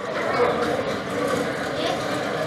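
Indistinct background chatter of several voices over steady room noise, with no single voice standing out.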